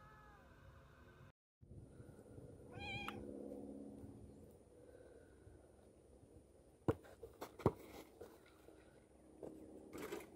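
A domestic cat meows once, briefly, about three seconds in, over a lower drawn-out sound. Later come two sharp knocks, the loudest sounds, and a few softer clicks.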